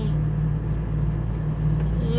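Scania 113 truck's six-cylinder diesel engine running steadily under way, a continuous low drone heard from inside the cab.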